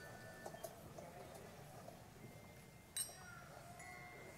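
Small coloured handbells rung one at a time, faint single ringing tones with a sharper strike about three seconds in, over a low room murmur.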